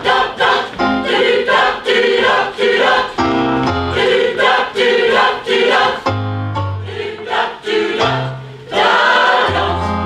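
Mixed choir of men's and women's voices singing in short, rhythmic phrases, with a longer held chord near the end.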